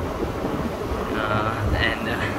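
Wind buffeting the microphone, a steady low rumble with no machine running.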